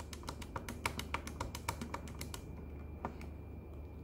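Keys of a Casio fx-96SG PLUS scientific calculator being pressed in quick succession, about six clicks a second, as the Ans key is entered over and over. The clicks stop a little over two seconds in, with one more click about three seconds in.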